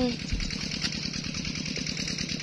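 Engine of a two-wheel walking tractor (rot tai), a single-cylinder diesel, running steadily with an even, rapid firing beat.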